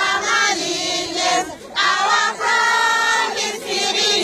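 A crowd of women singing together in short repeated phrases, with brief breaks about a second and a half in and just after two seconds.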